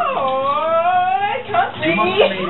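A long, high howl that dips and then slowly rises in pitch for over a second, followed by shorter cries, over background music with steady low notes.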